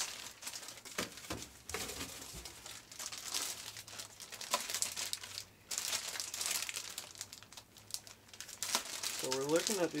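Clear plastic bags crinkling and crackling as bagged culture plates are handled and turned, a continuous run of crinkles with a brief pause about halfway through.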